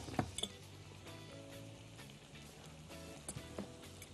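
Soft background music with a few light clinks of a wire whisk against a glass mixing bowl as flour and water are mixed into dough, near the start and again about three seconds in.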